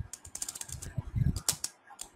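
Computer keyboard keys clicking in a quick, irregular run of keystrokes, with a brief pause near the end.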